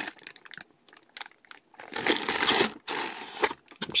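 Clear plastic bag crinkling as a bagged football jersey is handled. There are scattered small crackles at first, then two longer rustling bursts about two and three seconds in.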